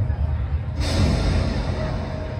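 Movie trailer soundtrack played through loudspeakers: deep, low-pitched music, with a sudden rush of hissing noise that comes in about a second in.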